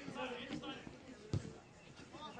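A football kicked hard: one sharp thud about one and a half seconds in.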